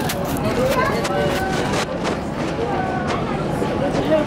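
People talking, with a steady noise of wind and the river underneath.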